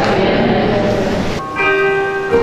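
Church bells ringing, cut off abruptly about one and a half seconds in. A keyboard instrument then starts playing sustained chords.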